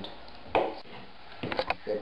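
Handling noise from duct tape being wrapped around a plastic two-liter soda bottle: a sharp knock about half a second in, then a quick cluster of clicks and crackles near the end.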